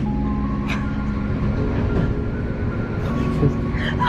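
Passenger train running at speed, heard from inside the carriage: a low rumble and rushing noise, with soft background music underneath.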